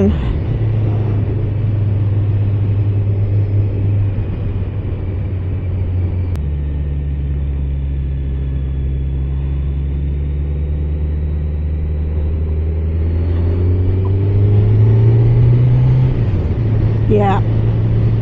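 Kawasaki Z900's 948cc inline-four engine running under way, with wind and road noise. Late on the engine note rises steadily as the bike accelerates, then drops back, as at a gear change.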